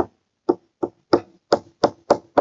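Stylus tapping on a tablet screen during handwriting: five short, sharp taps about a third of a second apart.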